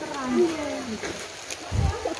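Indistinct human voices with long, gliding vocal sounds, and a brief low thump near the end.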